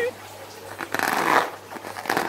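Filled rubber balloon being squeezed and rubbed between the hands, giving a rustling, scraping rub that swells about a second in and lasts about half a second.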